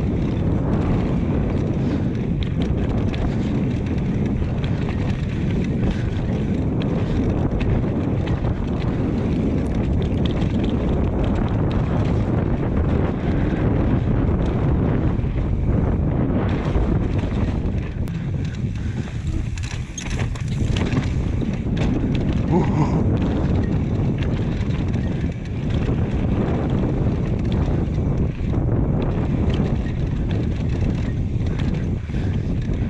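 Mountain bike descending a dirt forest trail: steady wind rush on the microphone with tyre rumble, and scattered knocks and rattles from the bike over bumps.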